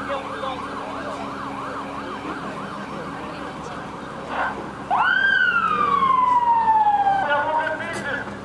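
Emergency vehicle siren: a fast warbling yelp, about three to four cycles a second, switching after about four and a half seconds to a louder wail that rises quickly and falls slowly.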